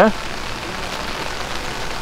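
Rainstorm: steady rain falling on wet pavement, an even, constant hiss.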